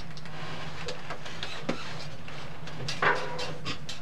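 Clear plastic dome on a stand being lowered over a person's head: light clicks and a short squeak about three seconds in, over a steady low hum.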